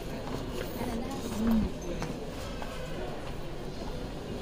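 Indoor airport-terminal ambience: indistinct chatter of people nearby and clicking footsteps on the hard stone floor, with one short, louder pitched sound, like a voice, about a second and a half in.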